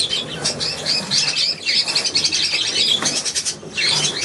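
Budgerigars chattering and warbling: a continuous stream of overlapping high chirps.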